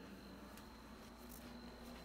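Faint steady running sound of a Compaq Deskpro 286 just switched on, with a thin steady high-pitched whine over a low hum.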